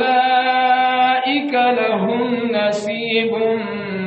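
A man's voice chanting in long, drawn-out notes that shift pitch a few times, in the melodic style of Qur'an recitation (tajwid).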